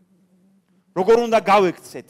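A man speaking through a lecture microphone, his voice starting about a second in after a short pause; a faint steady hum runs underneath.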